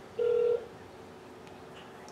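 A phone on speakerphone gives one short, steady electronic beep, about a third of a second long, near the start, as a call is being placed. Faint room noise follows.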